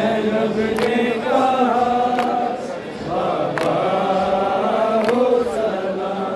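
A group of men chanting a noha, a Shia lament, in unison without instruments, with a sharp slap keeping time about every second and a half.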